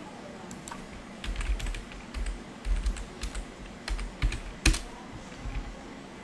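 Typing on a computer keyboard: a run of irregular keystrokes, the loudest about three-quarters of the way through, as a file name is entered.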